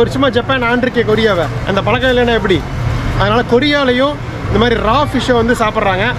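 A man talking continuously to the camera, with a steady low street hum beneath his voice.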